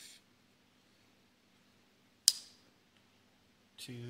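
A single sharp metallic snap about two seconds in, with a short ringing tail: the blade of an American Buffalo Knife & Tool Black Hills lockback folding knife clicking into its lock as it opens. Otherwise near silence.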